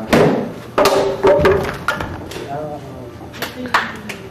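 A string of sharp knocks and thuds, the loudest right at the start and two more close together near the end, with a man's voice calling out in between.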